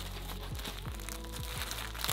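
Clear plastic poly bag crinkling and rustling as a folded T-shirt is pulled out of it by hand, over background music with a steady beat.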